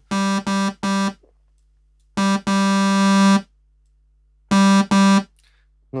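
A monophonic synth patch in the Serum software synthesizer, run through tube distortion, played from a MIDI keyboard: one note repeated seven times, three quick notes, a pause, a short note and a long held one, then two more short notes after another pause.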